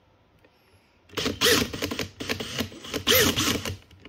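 Makita XPH12 brushless cordless drill run briefly twice, the motor and gears whirring up in pitch and back down each time, with rattling clicks.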